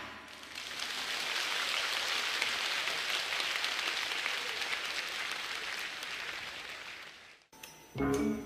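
A large audience applauding. The clapping swells up just after the start, holds steady, then fades and cuts off near the end.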